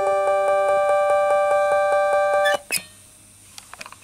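Vintage Japanese push-button synthesizer played through a Behringer DD400 digital delay, sounding several steady tones at once with a fast, even pulsing about eight times a second; the lowest tone drops out under a second in. The sound cuts off suddenly about two and a half seconds in, followed by a brief click.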